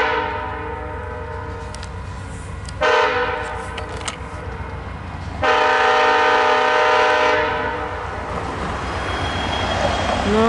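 Horn of VIA Rail P42DC locomotive 916 sounding the grade-crossing signal, a steady multi-note chord. A long blast cuts off as it opens, a short blast comes about three seconds in, and a long blast runs from about five and a half to seven and a half seconds, then dies away. Under it runs the low rumble of the diesel locomotive.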